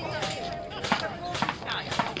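Quiet, indistinct speech from people nearby, with a few short clicks.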